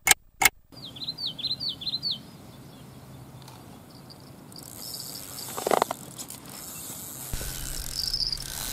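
Sharp, evenly spaced ticks, about three a second, stop just under a second in. A small bird then chirps several times. From about halfway a high, steady hiss builds toward the end.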